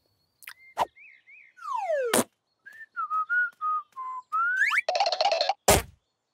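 Cartoon sound effects: a descending slide whistle ends in a sharp hit about two seconds in. A few short whistled notes and a quick rising whistle follow, then a rough burst of noise and a loud thud near the end.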